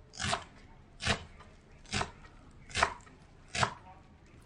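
Knife chopping fresh coriander on a wooden cutting board: five even chops, a little under one a second.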